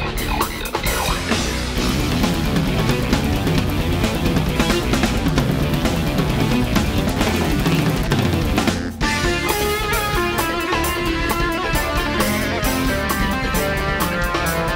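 Live instrumental fusion played on keyboards and drum kit, a busy passage with a guitar-like keyboard lead over the drums. The music drops out for a moment just before the nine-second mark, then carries on with held lead notes over the drumming.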